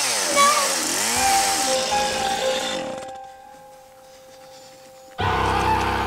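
A chainsaw revving, its pitch dipping and rising twice, then dying away about halfway through, with held notes of background music. A loud low sound cuts in abruptly near the end.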